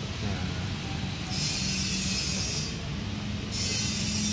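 A steady low mechanical hum, with a loud hiss that starts about a second in and stops about two seconds later.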